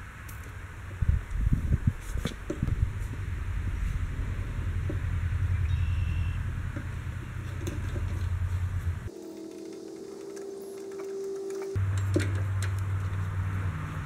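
Small metal tools and a knob being worked on a threaded steel rod: scattered light clicks and knocks, most of them in the first few seconds, over a steady low rumble that drops away for a couple of seconds near the middle.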